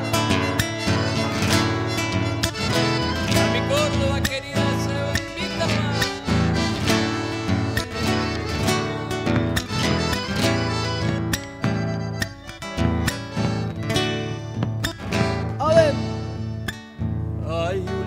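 Instrumental interlude of an Argentine zamba between sung verses: acoustic guitars strum and pluck the accompaniment without a singing voice.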